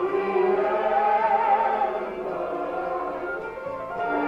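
Music: a choir of voices singing together, a little softer in the second half.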